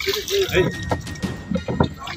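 Brief fragments of voices in the background, with a few sharp knocks near the end.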